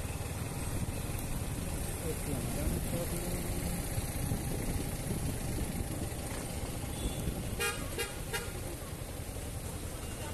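Street traffic heard from a motorcycle moving slowly through a jam: a steady low rumble of wind and engine, with a vehicle horn giving a few short toots about three-quarters of the way through.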